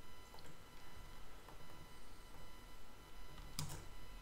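Quiet room tone with a faint steady hum, and a couple of faint clicks near the end from working the computer while editing.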